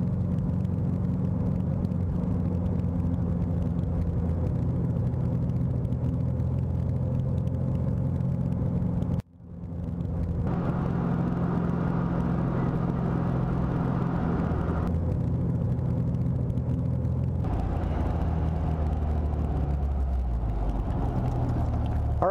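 A 1964 MGB roadster's four-cylinder engine running steadily as the car drives along, with road noise. The sound drops out briefly about nine seconds in, and the engine note falls over the last few seconds.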